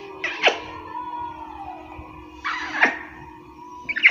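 Three loud kisses smacked close to the microphone, each a short breathy burst ending in a lip pop, spaced a second or more apart, over background music with a steady held tone.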